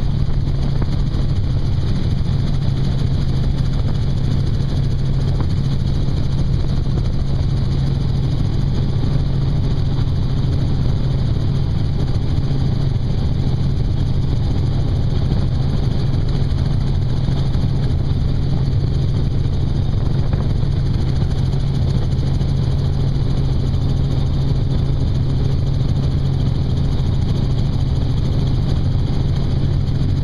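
Helicopter in steady flight, heard from inside the doors-off cabin: a constant low drone of engine and rotor mixed with the rush of wind through the open doorways.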